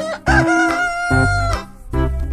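A rooster crowing, one long held call with a wavering start, lasting over a second, laid over keyboard music with a beat.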